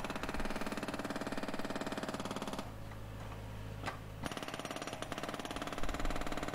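Hydraulic breaker attachment on a tracked mini skid steer hammering rapidly into a concrete slab, over the machine's steady engine hum. The hammering stops for about a second and a half in the middle, leaving only the engine running, then starts again.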